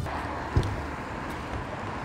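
Outdoor street ambience: a low steady rumble of road traffic, with a single thump about half a second in.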